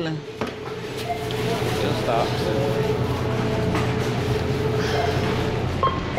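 Checkout-lane background: a steady low machine hum under faint voices of other people nearby.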